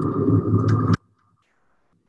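A film soundtrack's dense, low rumbling drone with a steady high hum and a few clicks, which cuts off abruptly about a second in, leaving near silence.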